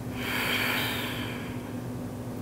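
A woman's slow, audible yoga breath: one long exhale lasting about a second and a half, stronger than the faint inhale before it.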